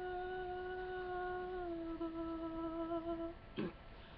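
A man's unaccompanied voice holding one long, steady note of the song, dipping slightly in pitch partway through and ending before the last second. A brief noisy sound follows near the end.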